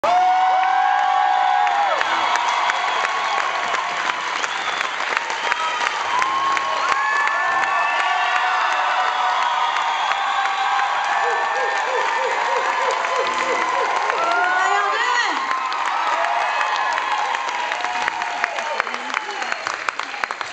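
Concert audience cheering, whooping and applauding, a dense mix of clapping and shouts that runs without a break.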